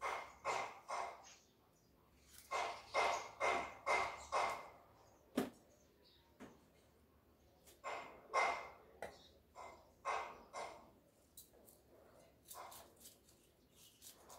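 A dog barking in three runs of several barks each, with pauses between. There is a single sharp knock about five seconds in.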